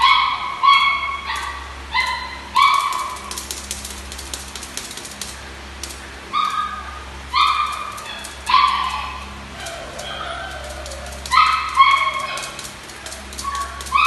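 Fila Brasileiro mastiff puppies yipping and yapping in short, high-pitched barks while playing. The barks come in bursts with short pauses between them, and the loudest come near the end.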